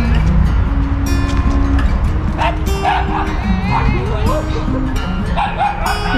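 A dog barking and whining in short calls that bend in pitch, starting about two seconds in, over background music with a steady low rumble.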